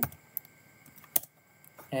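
A few separate keystrokes on a computer keyboard, the loudest about a second in.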